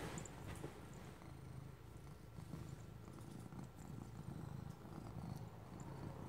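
Domestic cat purring steadily while being stroked: a faint, low, pulsing rumble.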